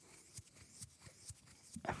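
Faint, close-miked crackle of fingertips rubbing eyebrow hair: scattered soft ticks, with a louder sound near the end.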